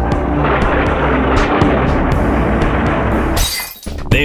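Cartoon sound effect of dense crackling and shattering debris over a low music bed, ending about three and a half seconds in with a short, high whoosh.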